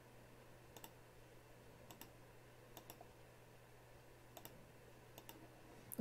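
Faint computer mouse button clicks, a handful of separate clicks at uneven intervals, over a faint steady low hum.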